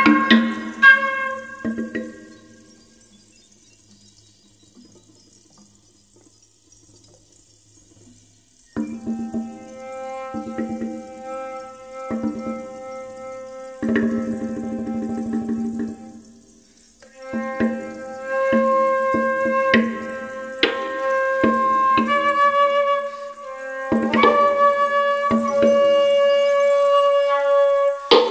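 Transverse flute and percussion playing: a few loud strikes at the start, then a very quiet passage, then long held flute notes over scattered hits returning about nine seconds in and growing fuller toward the end.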